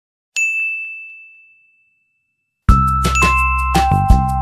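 A single bright ding about a third of a second in, ringing out and fading away over about two seconds. Near the end, background music starts loud, with a steady beat and bell-like melody notes.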